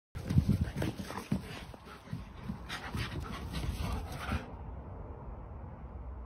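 Dogs panting during rough play, a German Shepherd and a Staffordshire Bull Terrier, in quick uneven breaths. The sound grows quieter about four and a half seconds in.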